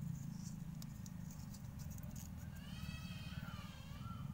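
Faint rustling and ticking of thin cord being knotted by hand over a steady low hum. About two and a half seconds in comes a drawn-out animal cry that rises and falls, lasting about a second.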